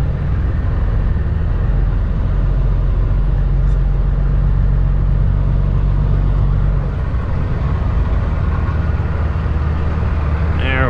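Kenworth W900L's Cummins ISX diesel engine running at low speed, heard from inside the cab while the truck creeps through a lot. Its note drops a little about seven seconds in.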